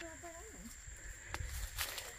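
A faint voice in the background for about the first half-second, then quiet outdoor ambience with a couple of soft clicks from movement through brush.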